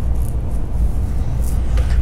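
A steady low rumble with a faint hiss above it, with no speech.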